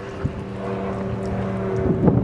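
Engine of a slow-moving vehicle in the street running at low revs, a steady low hum that grows gradually louder as it approaches, with one faint click about a quarter of a second in.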